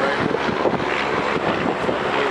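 Wind buffeting the microphone: a steady, rough rushing noise.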